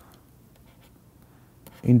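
Faint scratching and tapping of a stylus writing on a pen tablet.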